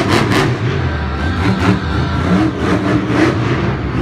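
Monster truck's supercharged V8 engine revving as the truck drives across the dirt arena, its pitch rising and falling.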